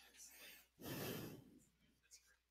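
Faint, indistinct voices, with a louder burst of voice or breath about a second in.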